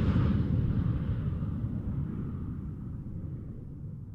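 A low rumble dying away steadily, the decaying tail of a loud boom.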